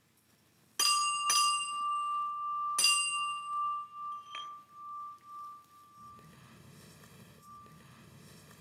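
A hanging metal school bell struck by hand three times in under two seconds, then a softer fourth strike, its clear ringing tone fading out over the next couple of seconds.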